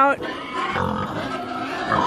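Low, quiet grunting of a pig.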